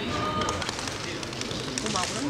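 Indistinct voices of people talking in the background, with a few faint scattered clicks.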